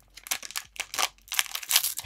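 Plastic foil trading-card pack wrapper crinkling and tearing as it is pulled open by hand, in irregular crackles that grow louder and denser in the second half.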